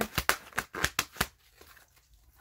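Tarot cards being shuffled and flicked by hand: a quick run of sharp paper snaps in the first second or so, then near quiet.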